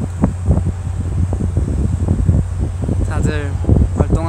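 A steady low rumble of wind on a phone microphone outdoors, with irregular soft knocks and rustles of the phone being handled. A man's voice comes in briefly about three seconds in.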